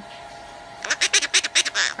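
A parrot giving a quick run of short, harsh squawks, about six in a second, starting just under a second in, the last one a little longer.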